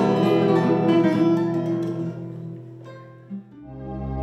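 The acoustic guitars and cavaquinho of a Cape Verdean morna let their final chord ring and fade away over about three seconds. Just before the end, a slow ambient music with a deep, steady bass tone begins.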